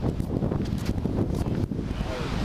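Wind buffeting the camera microphone: a loud, gusty low rumble that rises and falls unevenly.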